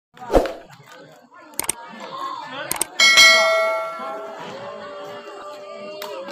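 A sharp knock, two short clicks, then a bright bell ding that rings out and fades over about a second and a half: a notification-bell sound effect.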